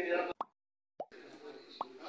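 An abrupt break in the recording: a man's voice stops, a short pop, then about half a second of dead silence, then another pop. Faint room murmur follows, with one more small pop near the end.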